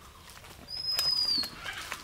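A single thin, high whistle held for under a second that dips in pitch at its end, over a few light clicks and scrapes of a hand tool digging in soil.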